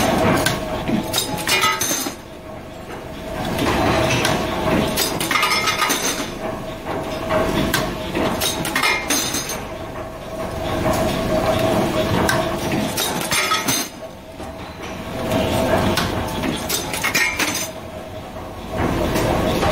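Metal-forming press with a single die running: repeated metallic clinks and clanks of steel parts being formed and dropping out, coming in waves with short lulls, over a steady machine hum.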